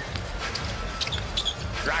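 Live arena sound from an NBA court: a basketball being dribbled on the hardwood, with a couple of short high sneaker squeaks over steady crowd noise.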